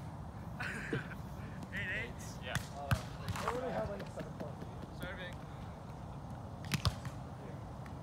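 A volleyball being struck by players' hands and forearms: one sharp hit about three seconds in and two quick hits near the end, over faint distant voices.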